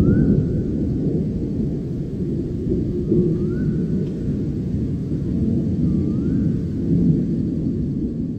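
Low, continuous rumble of rolling thunder from a storm. A short rising whistle sounds three times, about three seconds apart.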